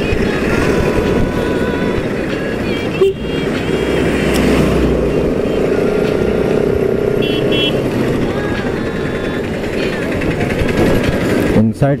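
Motorcycle riding through town traffic: steady engine noise and wind rush on a helmet-mounted camera. Short high horn beeps sound a little past halfway.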